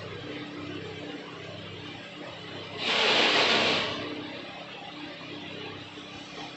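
A hot air rework station blowing on a phone circuit board: a loud hiss of air lasting about a second, around three seconds in, over a steady low hum.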